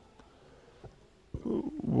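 Near silence for the first second or so, then about 1.3 seconds in a man's low voice sets in, a drawn-out hesitation sound that leads straight into his spoken answer.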